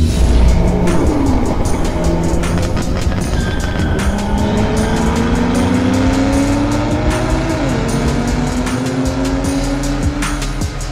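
Channel intro sound design: a car engine revving with slowly rising pitch and a gear change about three-quarters of the way through, with tyre squeal, over music with a steady beat. It opens with a loud low hit.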